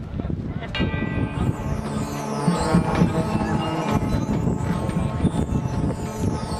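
A marching band's front ensemble begins its show with sustained, ringing bell-like tones entering about a second in. Crowd chatter from the stands continues underneath.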